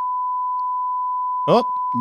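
A steady, unbroken 1 kHz sine tone, the signal left on the recording after a microphone was unplugged; a voice briefly says "Oh" about one and a half seconds in.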